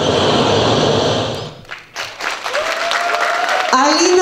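Audience applauding at the end of a dance number, dying away about two seconds in. A voice starts near the end.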